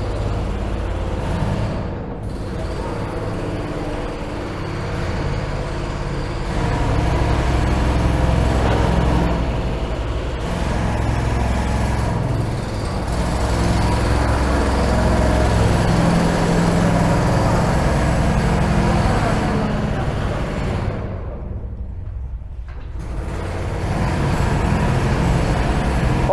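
Steady machinery rumble with a hiss over it; the hiss dips briefly about two seconds in and again for a couple of seconds near the end.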